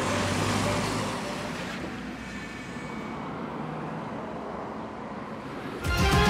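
City road traffic: cars and a trolleybus moving along a street, a steady hiss of tyres and engines that is a little louder for the first couple of seconds. A music sting starts right at the end.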